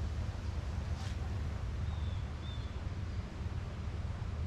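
Outdoor garden ambience: a steady low rumble of wind on the microphone under a soft hiss, with two faint, short high chirps about halfway through.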